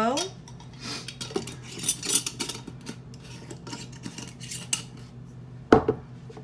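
Kitchen utensil handling: a spoon clinking and scraping against a bowl and glass jars as chia seeds are spooned in, scattered light taps with a sharp knock near the end.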